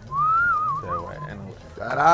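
A whistle about a second long: a single clear note rises, then wavers and falls away, over faint background music.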